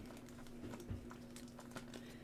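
Donruss UFC trading cards being flipped through by hand: faint, irregular light clicks and slides of card stock, over a faint steady hum.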